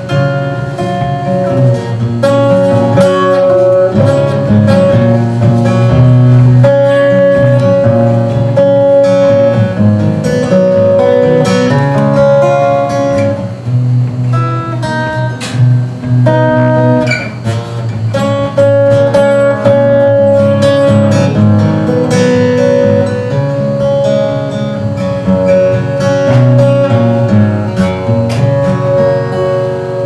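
Solo cutaway steel-string acoustic guitar playing an instrumental passage of picked melody notes over strummed chords and bass notes, with no singing.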